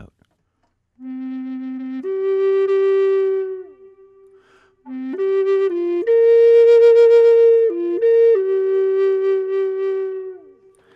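Low C minor Native American flute, made by Ron Stutz, played in two slow phrases that demonstrate a wide interval. About a second in, it sounds the bottom note and leaps up to a higher held note. Halfway through, a second phrase starts on the bottom note, leaps up, climbs higher and moves between a few held notes before settling.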